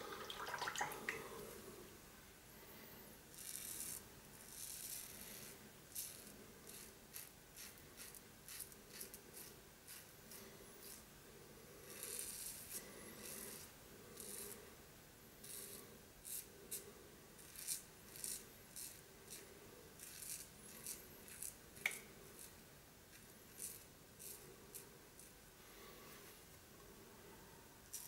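Razorock SLAB safety razor scraping stubble through shaving lather in a long series of short, quiet strokes, often one or two a second.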